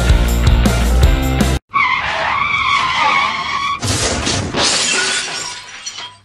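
Rock music cuts off suddenly, then a motorcycle crash sound effect: a wavering tyre screech for about two seconds, then a loud crash with breaking and shattering that fades away.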